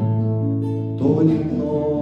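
Acoustic guitar strummed as song accompaniment, with new chords struck at the start and again about a second in, ringing on between strums.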